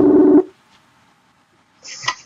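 Outgoing video-call ringing tone, a steady low tone that cuts off about half a second in. A silent gap follows, then a few short sounds near the end as the call connects.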